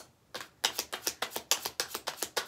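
A tarot deck being overhand-shuffled in the hands: a quick, even run of card slaps and clicks, about seven or eight a second, starting after a brief pause.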